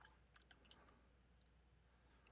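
Faint keystrokes on a computer keyboard: a handful of soft, irregular clicks as a short word is typed, over a low steady hum.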